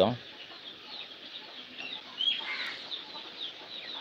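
Faint bird calls in the background: short high chirps scattered through, with one slightly louder call a little past halfway.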